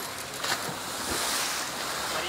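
An orca crashing back into the pool after a leap: a sharp splash about half a second in, followed by the rush of churning, falling water.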